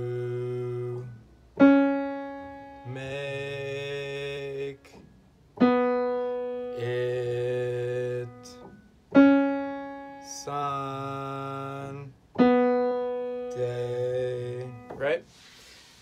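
Single piano notes struck one at a time, each left to fade, and after each a man sings the same pitch back as a held syllable of about two seconds: a pitch-matching drill, four notes in all. Near the end comes a short sliding vocal sound.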